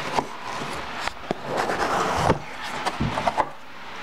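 White cardboard box being handled and its lid opened: several sharp taps and knocks, with a stretch of scraping and rustling in the middle as the cardboard slides open.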